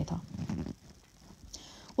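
A pause in a woman's narration: her last word ends right at the start, a faint noise follows for about half a second, then near silence until she speaks again.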